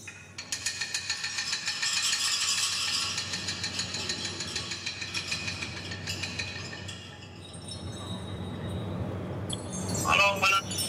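Background music: a fast, fine rhythmic ticking over a steady low drone, easing off a little in the last few seconds.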